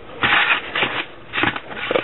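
Paper envelopes and mail rustling and sliding as they are sorted through by hand, in two short spells.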